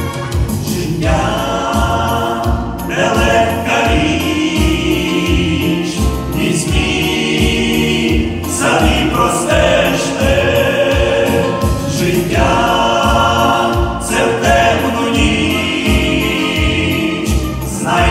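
Men's vocal group singing a gospel song over backing music with a steady low beat.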